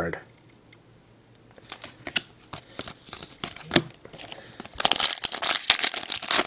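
Light clicks and rustles of trading cards being handled. Then, in the last second or so, a plastic card-pack wrapper crinkles loudly as it is torn open.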